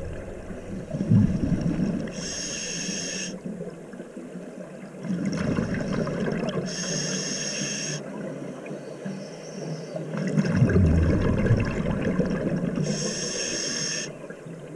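Scuba diver breathing through a regulator underwater: a low gurgling rumble of exhaled bubbles alternates with the hiss of an inhalation through the regulator, three breaths about five seconds apart.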